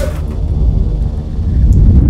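Deep, loud rumbling drone of a film's sound design, swelling louder toward the end.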